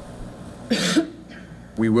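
A single short cough, about two-thirds of a second in, during a pause in a man's talk at a microphone; he starts speaking again near the end.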